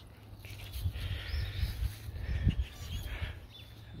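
Outdoor ambience picked up on a phone while walking: an irregular low rumble, strongest in the middle, with faint high chirps over it.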